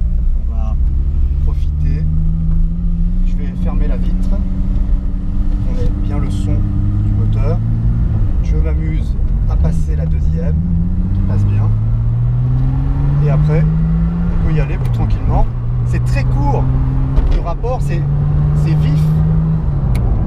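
Venturi 260LM's turbocharged PRV V6 heard from inside the cabin, pulling away: the engine note climbs and drops sharply twice as the car is shifted up through its short gears, then holds steady at a cruise.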